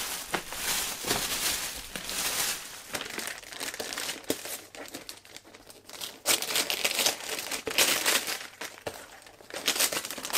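Crinkling and rustling of packaging handled by hand, with many small crackles. It comes in bursts, louder at the start and again from about six seconds in.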